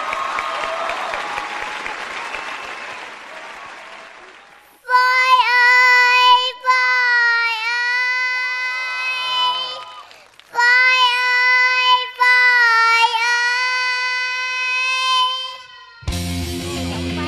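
Audience applause that fades out. Then a young girl sings long, high held notes without accompaniment, in four phrases with short breaks, as the opening of her song.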